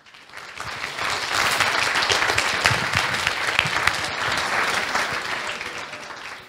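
Audience applauding, swelling over the first second and tapering off near the end.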